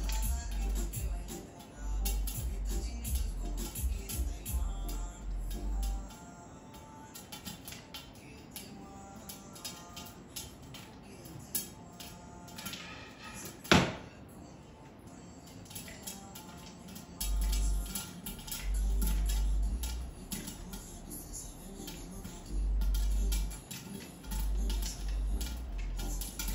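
Popcorn kernels popping inside a lidded frying pan, with scattered sharp pops and one much louder crack about halfway through. At intervals a low rumble comes from the pan being shaken on the glass cooktop.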